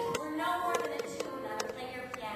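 Live music from a stage musical's performance: held notes with a few sharp, struck attacks scattered through them.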